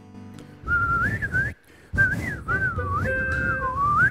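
A man whistling a short tune into a handheld microphone, the pitch wavering up and down, in two phrases with a brief pause between them.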